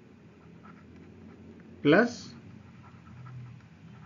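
Faint scratching and ticking of a stylus writing on a pen tablet, with a man's voice saying one word about two seconds in.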